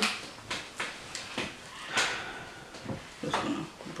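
A string of light clicks and taps from handling a small jar and a hair brush, with one sharper click about two seconds in.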